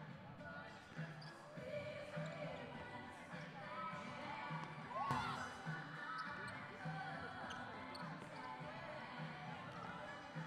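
Basketballs bouncing on a hardwood court, a steady run of dull thumps nearly two a second, with indistinct voices and faint music behind.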